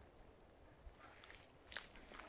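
Near silence with faint footsteps on dry grass and twigs of a forest floor, and one light snap near the end.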